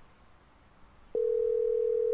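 Telephone ringback tone heard on the caller's end: after a quiet gap, one long steady beep starts about a second in, part of a long-beep, long-pause cadence. The call is ringing unanswered.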